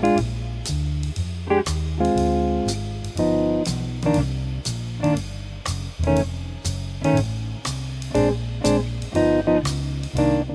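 Guitar comping a jazz blues in short chord stabs, many anticipated to land ahead of the beat, over a backing track. The track has a bass note changing about once a beat and drums keeping steady time.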